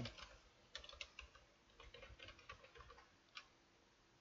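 Faint computer-keyboard typing: a scattered run of soft key clicks that stops a little before the end.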